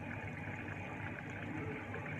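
Steady low background hum and hiss of room noise, with no distinct event.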